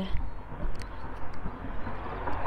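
Low, uneven outdoor rumble picked up by a handheld phone microphone while walking, with a few faint clicks.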